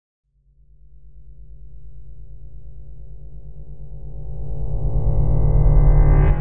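Synthesized intro swell: a low, rapidly pulsing drone that comes in about half a second in and grows steadily louder and brighter, peaking at the very end as the logo appears.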